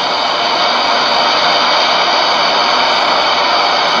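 Arno floodwater rushing through a city street: a steady, unbroken noise of moving water, heard through an open window over an old, thin-sounding broadcast link.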